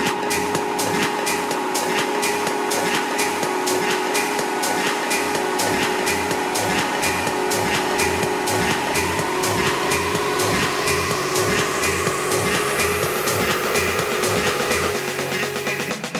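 Electronic dance music from a DJ mix in a build-up: sustained synth tones over steady hi-hat ticks, with a tone gliding upward and a rising noise sweep from about halfway through.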